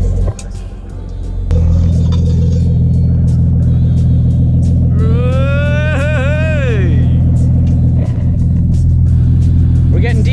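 Nissan Stagea's engine running steadily at idle, coming in loud about a second and a half in. Midway a loud pitched tone rises, wavers and falls away over about two seconds.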